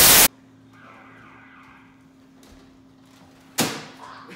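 A burst of TV-static hiss that cuts off suddenly about a quarter second in, then quiet room tone with a faint steady hum. Near the end comes a sudden loud rush of noise that fades over about half a second.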